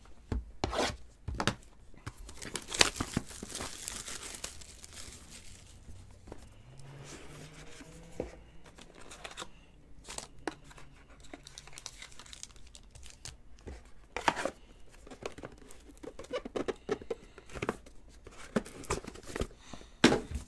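Trading-card packaging being torn open and handled by hand: tearing and crinkling, with scattered taps and clicks.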